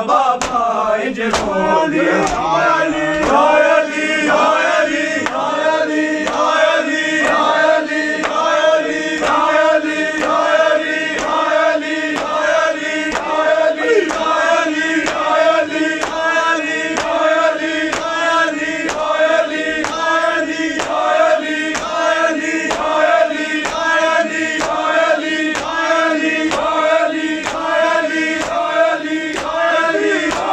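A crowd of men chanting a short refrain in unison, over a steady beat of open hands slapping bare chests in matam (ritual chest-beating).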